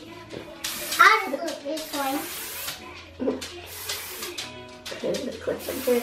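Aerosol hairspray can sprayed onto a child's hair in about four short hissing bursts, each a second or two apart.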